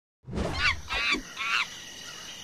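Monkey calls: three short, high calls in quick succession, the first sliding down in pitch.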